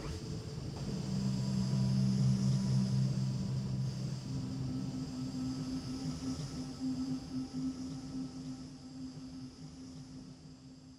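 Quiet background music of low held notes: a deep sustained chord comes in about a second in, a higher note joins a few seconds later, and it slowly fades out.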